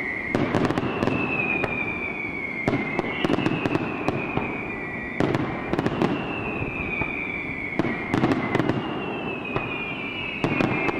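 Daylight fireworks display: clusters of sharp bangs and crackling from aerial shells bursting, over a dense continuous rumble. A high whistle that falls slowly in pitch comes back about every two and a half seconds.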